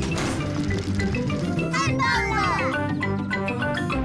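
Light cartoon background music, with a short noisy burst at the start and a brief excited vocal sound from a pig character about halfway through.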